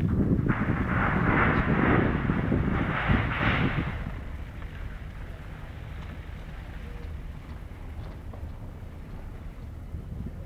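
Wind buffeting a phone microphone: a heavy, uneven rumble with a rushing gust for about the first four seconds, then settling into a quieter, steady wind noise.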